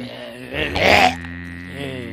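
Wordless vocal sounds from a man, loudest in a rough burst about a second in, over steady background music with a held low drone.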